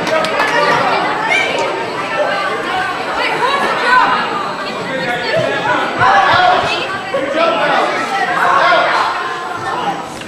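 Many people talking at once in a gymnasium: a steady murmur of overlapping chatter from spectators and players, with no single voice standing out.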